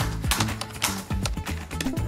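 Rapid clacking of a laptop keyboard being typed on hard, many quick key clicks over background music.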